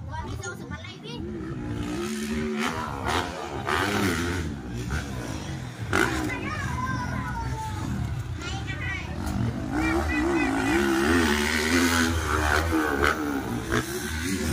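Motocross dirt bike engines revving, their pitch rising and falling as the riders work the throttle over the jumps, loudest about a second in and again near the end. Spectators' voices call out over the engines.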